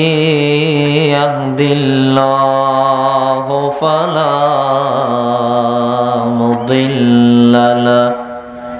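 A man chanting the Arabic opening praise of a sermon through a microphone in long, drawn-out melodic notes, with a few brief breaks for breath; it stops at the end.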